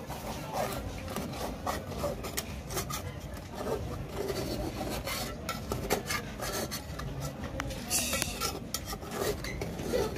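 Metal spoon stirring and scraping inside an aluminium saucepan, a run of short scrapes and clinks, with one longer, harsher scrape about eight seconds in. The egg and silver fish are cooked without oil, so the spoon is working egg that sticks and coats on the pot.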